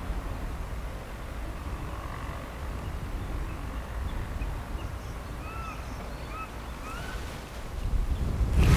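Outdoor river ambience: a steady low rumble of wind on the microphone, with a few faint, short bird chirps in the second half.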